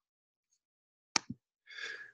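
About a second of near silence, then two short clicks in quick succession, followed by a short breath drawn in just before speaking.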